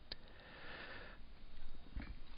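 A man's faint breath in through the nose, a soft hiss lasting about a second, then quiet room tone.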